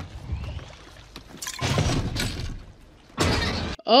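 Film soundtrack sound effects: a low rumble under two loud, noisy crashing swells, the first about a second and a half in and a shorter one near the end.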